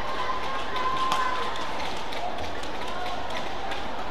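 Badminton rally: court shoes squeaking on the court mat in short drawn-out squeals as the players move, with light footfalls and a sharp racket strike on the shuttlecock about a second in.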